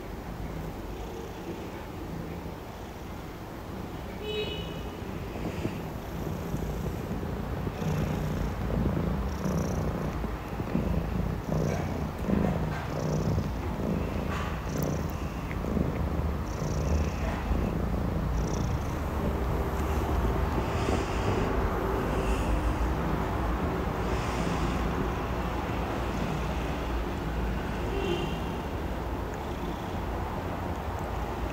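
A six-month-old Maine Coon kitten purring steadily as it is licked and groomed, the purr growing stronger a few seconds in.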